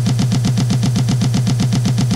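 A music track stuttering in a very short DJ loop, one fragment repeated about twelve times a second over a steady low bass tone, giving a rapid machine-gun-like roll.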